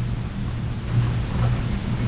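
Room tone through a surveillance camera's audio: a steady low hum with an even hiss.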